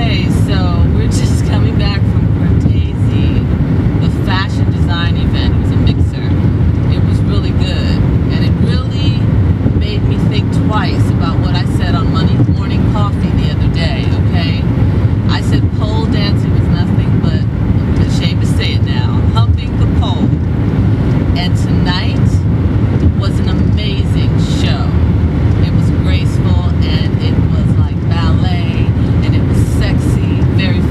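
Steady low rumble of road and engine noise inside a moving car's cabin, with a woman talking over it.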